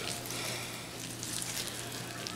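Gloved hand smearing mayonnaise over the fat cap of a partly frozen raw brisket: a faint, wet rubbing and squishing.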